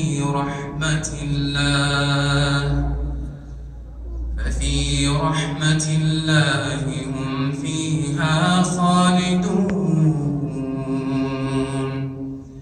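A man reciting the Quran in melodic, drawn-out tajweed style, holding long wavering notes in phrases, with a short pause about three to four seconds in.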